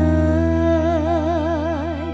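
A female singer holds one long note with a steady vibrato in a Khmer pop song, over sustained bass and keyboard chords.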